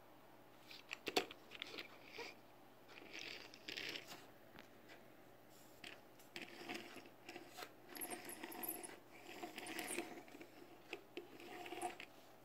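Fingers handling a die-cast Matchbox Dodge Wreck Truck toy: faint, scattered clicks, scrapes and rubbing as the little metal truck is turned over, set down on the table and its crane boom handled. The sharpest click comes about a second in.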